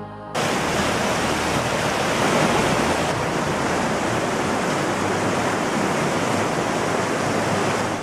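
Water of a small mountain river rushing and cascading over rocks and boulders, a loud steady rush that starts abruptly just after the beginning.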